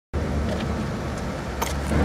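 Steady low rumble and hiss of outdoor background noise, with a few faint clicks.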